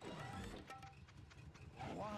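Cartoon soundtrack: a sudden falling swoop sound effect, then busy cartoon noise, and a cartoon character's voice begins near the end.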